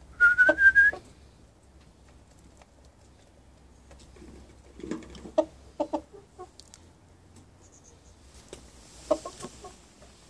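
A short warbling whistle, rising slightly, for about the first second, then a rooster's short low clucks in a burst around the middle and another near the end, with faint taps between.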